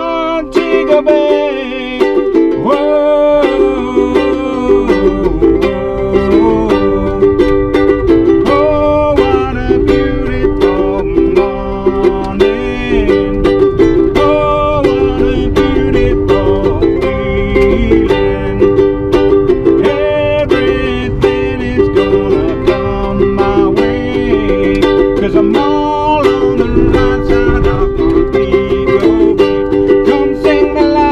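Ukulele strummed in a steady rhythm through a run of chord changes, with a man singing along, heard inside a car's cabin.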